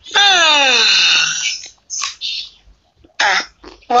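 A long vocal sound falling steadily in pitch for about a second and a half. It is followed by a short breathy sound, then a brief vocal sound near the end.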